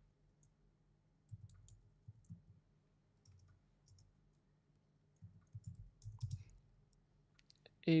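Faint computer keyboard typing: a scattered run of soft key clicks as a word is typed out letter by letter.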